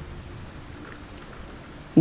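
Steady rain falling: an even, unbroken hiss with no distinct drops or thunder.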